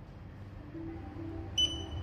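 A single short, high electronic beep from a teeth-whitening LED lamp as it is switched on, near the end, heard over background music that fades in from about half a second in.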